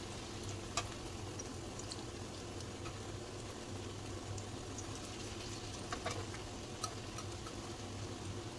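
Mung bean patties sizzling faintly in shallow oil in a frying pan, with a few light clicks of metal tongs against the pan as they are turned, about a second in and twice near the end.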